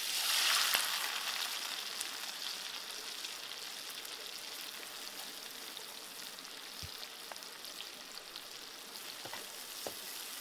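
Chillies and leaves hitting hot oil in a wok: a sudden loud sizzle that settles into steady frying, dotted with faint pops and clicks.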